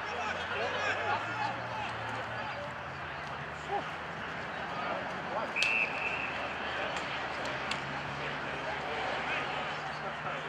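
Indistinct shouting and calls from players and onlookers at an Australian rules football match, with a single short, steady umpire's whistle blast a little over halfway through.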